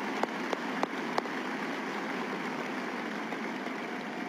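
Large audience applauding: a steady wash of clapping, with a few sharper single claps standing out in the first second or so.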